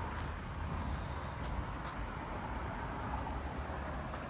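Wind on a phone's microphone: a low, uneven rumble, with a few faint ticks from the phone being handled.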